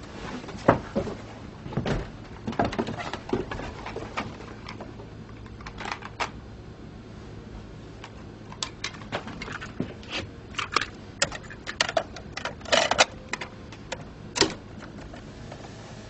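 Irregular clicks, taps and knocks of small objects being handled, coming more often in the second half, over a faint steady low hum.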